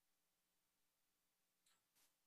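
Near silence: room tone on the hearing's audio feed.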